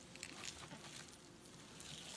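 Near silence with faint, soft rustling and light ticks of a gloved hand and hive tool working a treatment strip in among the frames of an open beehive.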